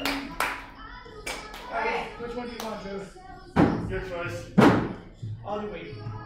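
Indistinct talking throughout, with two sharp thumps about a second apart near the middle, louder than the voices.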